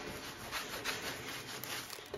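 A cloth rag rubbing over a glass palette in a soft, continuous scrub, wiping dried oil paint with nail polish remover to break down its top layer.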